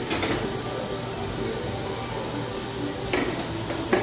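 Light knocks and clatter of a ceramic casserole dish being set onto a wire oven rack and pushed in, with a sharper knock near the end as the oven door is brought up to close.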